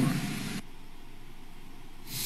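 A man's speech trails off in the first half-second, then a steady faint hiss of background noise and room tone in a pause between clips.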